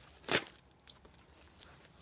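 A single short rustle of fabric, about a third of a second in, as a Kevlar groin protector is pulled off the target it was propped against.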